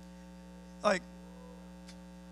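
Steady electrical hum from the sound system, a low buzz with several overtones, broken by one short spoken word about a second in.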